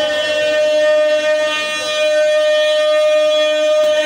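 Devotional qasida music over a loudspeaker system: a single note held steady on one pitch, with a short falling glide in the first second.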